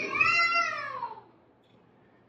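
A high-pitched, drawn-out vocal cry from a person, rising and then falling in pitch over about a second before fading away.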